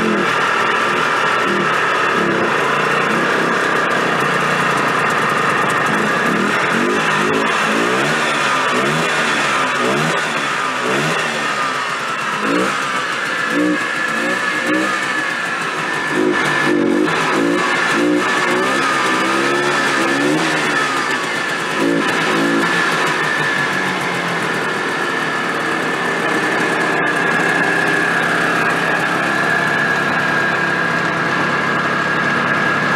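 Yamaha Bravo BR250 snowmobile's single-cylinder two-stroke engine running and being revved up and down, its pitch wavering, with a steady high whine over it. The engine is running on old gas after years of storage, and its oil-injection line is only slowly priming to the carburettor.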